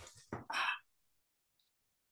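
A woman's breath, drawn and then sighed out audibly once, lasting under a second and loudest at its end, as part of a loosening stretch.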